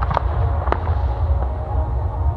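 Aerial fireworks shells bursting: three sharp cracks in the first second, two of them in quick succession at the start, over a steady low rumble.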